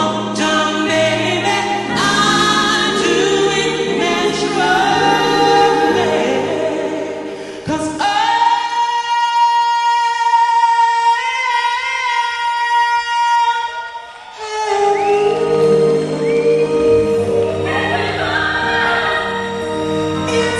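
A pop singer singing live into a handheld microphone over backing music. About eight seconds in the backing drops away and the singer holds one long high note for about six seconds, then the full backing comes back in.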